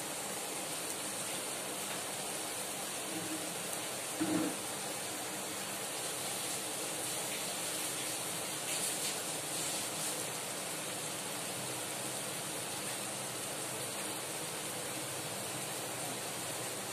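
Steady hiss from the stove as the fried masala cooks on high flame in a steel kadai, with a faint brief blip about four seconds in.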